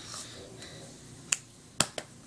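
Two sharp slaps of hands striking while signing in sign language, about half a second apart in the second half.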